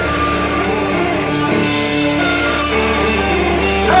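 Live rock band playing loud, an electric guitar riff over drums with a steady cymbal beat, heard from within the crowd.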